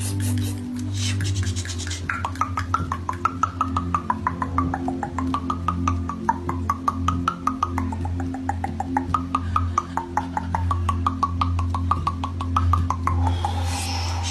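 Rapid pitched clicking, several clicks a second, whose pitch rises and falls in a wavering, tune-like line over a steady low hum. Near the end the clicking gives way to a briefly held tone.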